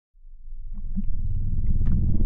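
A deep, low rumble swelling up from silence and building steadily, with a few faint clicks over it.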